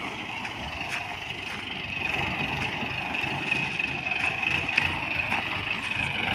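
Mahindra Bolero pickup's diesel engine running as it drives slowly over loose crushed-stone gravel, getting a little louder about two seconds in. A steady high-pitched hiss sits behind it.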